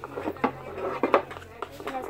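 Slime being stirred with straws in plastic cups: a few sharp clicks and taps of the stirrers against the cups.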